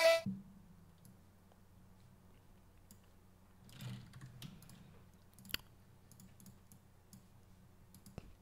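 A sustained pitched sound from the music project playing back cuts off just after the start, leaving faint room tone with scattered computer-mouse clicks, the sharpest about five and a half seconds in.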